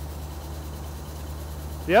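Oliver gravity separator running: a steady low hum from its blower and eccentric-driven vibrating deck. A man's voice starts just at the end.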